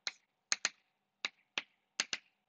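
Chalk tapping on a blackboard: about five short, sharp taps at uneven intervals as dots are drawn around a chloride symbol.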